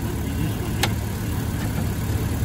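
A 2005 Jeep Wrangler's inline-six engine idling steadily, with one sharp click a little under a second in.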